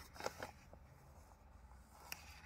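Faint rustle of a packet being handled, with a few short crinkles in the first half second, then near quiet.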